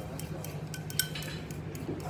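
Chopsticks tapping and scraping against a ceramic rice bowl as the last rice is gathered up: a run of light clicks, with one sharper ringing clink about a second in. A steady low hum runs underneath.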